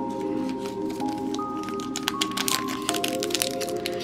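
Soft background music of long held notes, with the crinkling of a foil Pokémon booster pack being handled and torn open in the second half.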